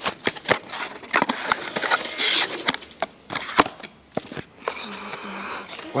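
Handling noise of a handheld phone: repeated sharp clicks, knocks and rustles as it is moved about. A breathy sniff about two seconds in, as a scented candle is smelled.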